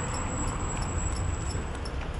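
Steady low rumble and hiss of a homemade electric cargo bike rolling slowly along a street, with a faint high-pitched whine that stops near the end.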